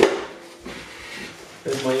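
A sharp knock, then soft rustling of cardboard and paper as a hand reaches into a cardboard box for a sheet of paper.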